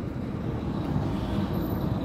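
Road traffic: a low, steady vehicle engine rumble that grows slightly louder.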